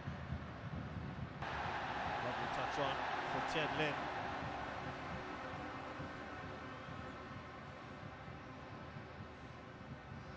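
Crowd noise from a packed football stadium: a steady background din, then about a second and a half in the crowd suddenly swells into a roar that fades away over the next few seconds.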